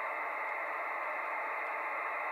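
Steady hiss of band noise from an HF amateur radio transceiver's speaker, held inside a sideband receiver's narrow voice passband, with no station transmitting on the frequency.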